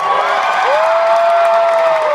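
An a cappella group holding its final chord, several voices sustained together, while the audience breaks into applause and cheering.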